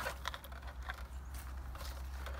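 A few soft, irregular footsteps and scuffs on gravel and dry leaves, with light handling of a small plastic heater, over a steady low hum.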